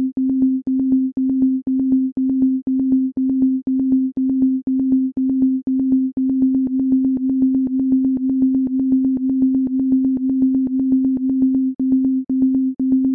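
A simple Csound instrument playing short repeated notes on one pure, steady tone near middle C, each note starting and stopping with a click. Several loops triggered at different intervals and offsets overlap, so the rhythm is uneven and thickens into a quick stream of notes, about four to six a second.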